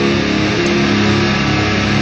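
Live rock band playing loud distorted electric guitars, bass and drums, holding a steady heavy chord.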